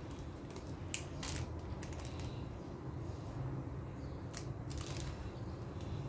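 Silicone spatula spreading and pressing a sticky layer of sliced almonds in honey caramel over a cake: soft scrapes and a few scattered light clicks and crunches of the almond flakes, over a low steady hum.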